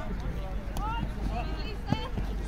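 Distant voices of players calling across an outdoor sports field over a steady low rumble, with a single short knock near the end.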